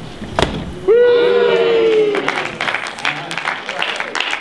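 A single slap of the inflatable beach ball, then an audience's drawn-out "ooh" of several voices held for about a second, followed by scattered clapping.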